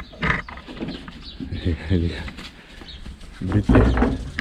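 A man's voice speaking in two short phrases, with a quieter outdoor background between them.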